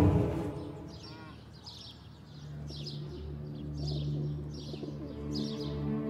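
Loud dramatic music fades out in the first second, leaving birds chirping in repeated short high calls. A faint steady low music tone comes in under them about two seconds in.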